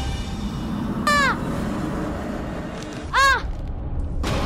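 Two crow caws about two seconds apart, added as a sound effect. Each is a short call that rises and falls in pitch.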